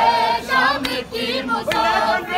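Noha, a Shia mourning lament, sung by a group of men's voices, with three sharp slaps of chest-beating (matam) keeping time just under a second apart.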